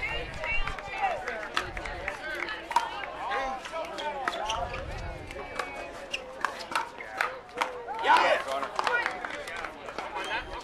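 Pickleball paddles hitting a hard plastic ball in a rally: a series of sharp, irregular pops, with people talking around the court.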